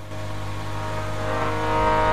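Harmonium holding a steady chord that swells gradually louder.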